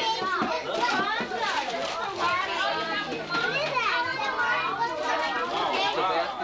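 Several children's voices chattering and calling out over one another, too overlapped to make out words.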